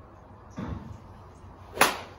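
A golf iron striking a ball off a range mat: one sharp crack near the end. About half a second in there is a softer, shorter noise.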